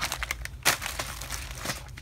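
Handling noise: an irregular string of crinkles and clicks, the loudest a little over half a second in.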